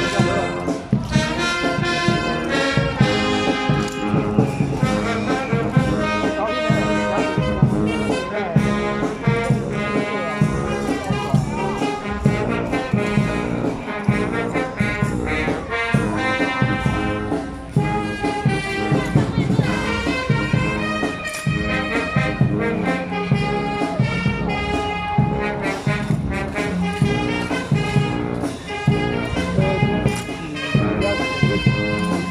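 Marching brass band playing a tune live, trombones, trumpets and sousaphones sounding together in changing chords.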